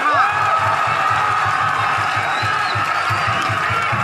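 A large crowd of football supporters cheering and shouting together, with a fast regular low beat, about five a second, under it.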